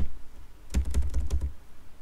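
Typing on a computer keyboard: a single keystroke, then a quick run of key clicks about a second in, as a division sign is entered.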